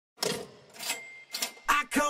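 Cash register sound effect: a few sharp clacks and a short bell-like ring. A voice starts the first rapped line near the end.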